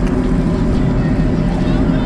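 Sea-Doo jet ski engine idling with a steady low hum, with voices in the background.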